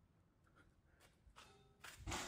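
Near silence, with a few faint clicks spread through the quiet and a slightly louder one near the end.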